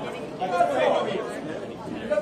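Chatter: several people talking at once, with no single clear speaker.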